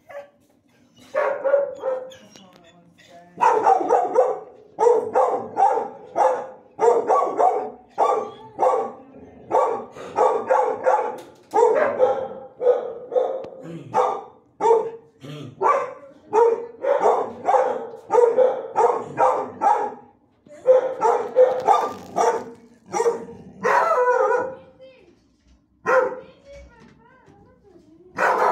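Dogs barking over and over in hard-walled shelter kennels, about one to two barks a second, with a short break about twenty seconds in.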